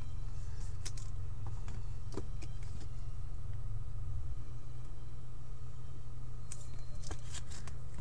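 Trading cards handled and sorted by hand, with a few faint clicks and taps as cards are picked up and set down, over a steady low hum.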